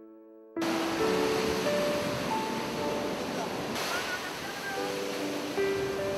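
A fading electric piano chord, then about half a second in a sudden cut to the steady wash of ocean surf on a beach, with held musical notes over it.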